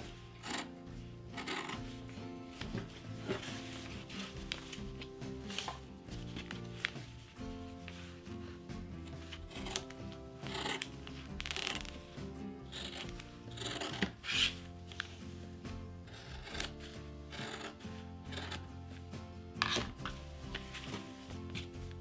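Fabric scissors snipping through four layers of cotton fabric and a pinned paper pattern, in short irregular cuts along a curved edge. Steady background music plays under the snips.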